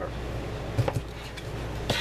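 Cleaver chopping through smoked sausage onto a plastic cutting board: a few sharp knocks, the loudest near the end.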